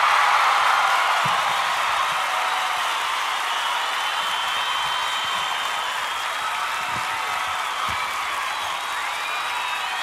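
A group of children cheering and shouting all at once: a loud, steady din with a few high-pitched squeals riding on it.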